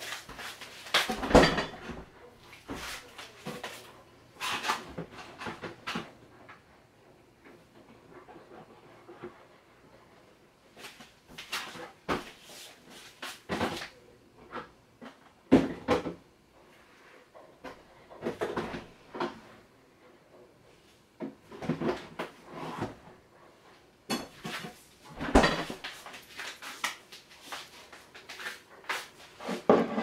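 Irregular knocks and clunks of objects being handled in a kitchen, a dozen or so scattered through the stretch with quiet gaps between them.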